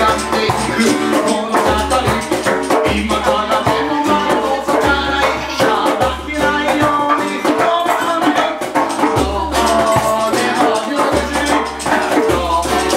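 Live acoustic band playing an upbeat song: ukulele and acoustic guitar strummed over a hand drum, with low notes recurring about once a second.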